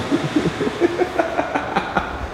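Several men laughing together, a choppy run of short laughs.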